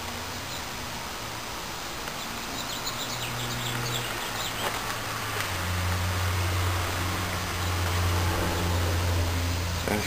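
Outdoor ambience: a low steady hum that grows louder about halfway through, with a few faint bird chirps near the middle.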